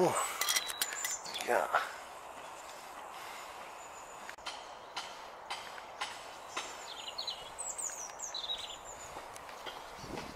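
Small birds calling in the trees: a few short, high chirps in the second half.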